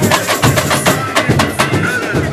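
Samba school drum section (bateria) playing a driving samba beat: deep bass drums under a dense, rapid rhythm of sharp drum and percussion strikes.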